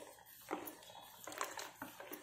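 A few faint, separate clinks and scrapes of a metal spoon stirring in a steel pot as vinegar splits the hot milk.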